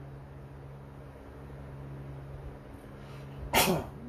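A steady low hum, then near the end one short, loud burst of breath from a man's nose and mouth.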